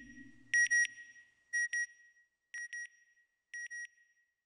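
Electronic beeps: a high tone sounding in quick pairs about once a second, each pair fainter than the last like a fading echo. A low rumble dies away during the first second.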